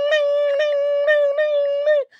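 A man vocally imitating a guitar riff: one high note held steady and chopped by short breaks about three times a second, ending abruptly.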